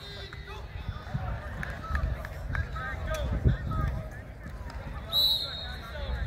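Several voices call out across an open football field during a drill, with a low thump about three and a half seconds in. Near the end a coach's whistle gives one short, shrill blast.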